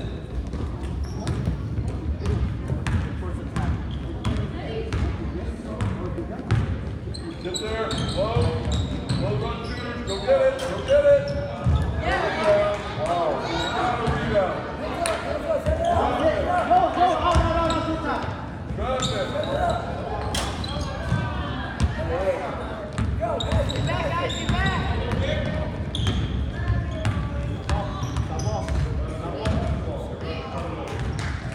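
A basketball being dribbled and bounced on a hardwood gym floor during play, a run of sharp, evenly spaced knocks that echo in the hall, with voices calling out over it in the middle stretch.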